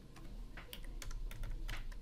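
Computer keyboard typing: a quick run of separate keystrokes entering a short number.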